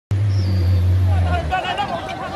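A heavy vehicle's engine drones low and steady, then stops abruptly about a second and a half in. From about a second in, a crowd of men shouts and calls out, many voices at once.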